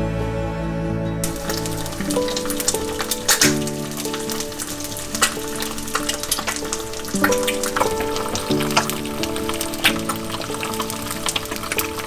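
An egg frying in a pan, sizzling with many small crackles and pops, which starts suddenly about a second in. Music with slow, held notes plays over it throughout.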